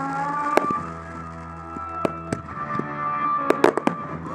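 Aerial firework shells bursting with sharp bangs, over music. One bang comes about half a second in, two come around two seconds, and a quick cluster of several, the loudest, comes near the end.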